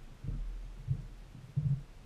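Three dull low thumps, the last one loudest near the end, over a low rumble: handling noise from hands working at the table close to the microphone.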